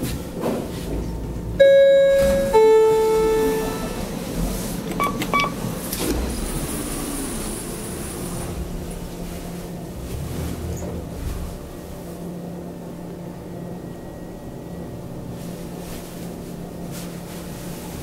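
A KONE elevator's two-note chime, a high ring and then a lower one, followed about two seconds later by two short beeps. Then a steady low hum as the traction elevator car travels upward.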